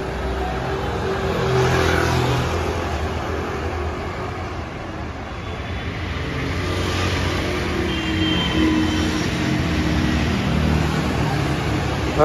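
Steady road traffic: cars and taxis driving past on a multi-lane city road, a continuous hum of engines and tyres that swells as vehicles go by, loudest about two seconds in and again in the second half.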